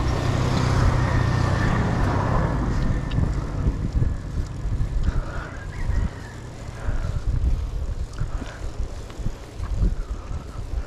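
Oncoming motor vehicles passing close by, their engine hum loudest in the first few seconds and then fading away, over wind noise on the handlebar-mounted microphone of a moving bicycle.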